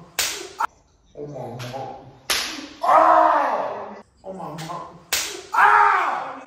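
Open-handed slaps to the face: three sharp smacks about two to three seconds apart. Each of the later two is followed by a loud voice crying out.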